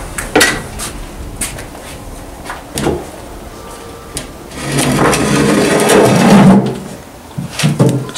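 Several sharp knocks and bumps, then about two seconds of loud scraping as an old door is pushed open.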